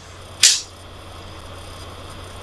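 Quiet recording background: a steady low electrical hum under faint hiss, broken about half a second in by one short sharp hiss like a spoken 's'.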